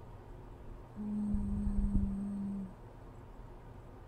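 A woman's closed-mouth hum, a steady 'mmm' on one pitch held for about a second and a half, starting about a second in.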